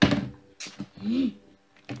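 A person's sharp gasp, then a breath and a brief wordless voiced sound with a rising-then-falling pitch.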